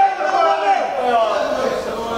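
Men talking, their voices continuous but not picked out as words.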